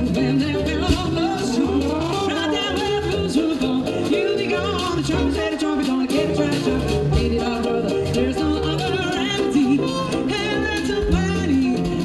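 A live band playing: a woman singing over keyboard, drum kit and trumpet.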